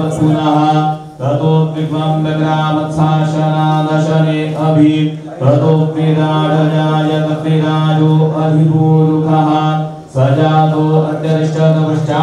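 Hindu mantra chanting held on a steady, nearly unchanging note, with short breaks for breath about every four to five seconds.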